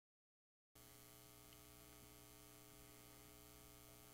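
Near silence: a faint, steady electrical mains hum that starts about 0.7 s in.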